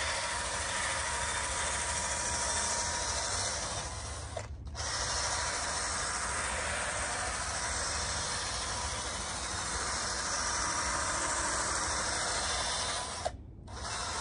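Steady whirring hiss of a handheld power tool being used on a tire. It cuts out briefly about four and a half seconds in and again near the end.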